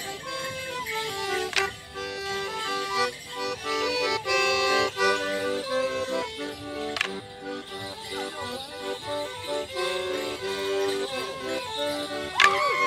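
Accordion-led traditional dance tune played for morris dancing, a steady run of melody notes, with two sharp clacks standing out over the music.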